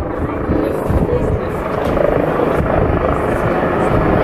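Aircraft noise at an airport: a steady, loud rumble of engines.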